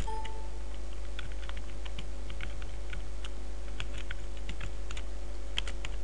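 Irregular clicks of computer keyboard keys being tapped, over a faint steady hum.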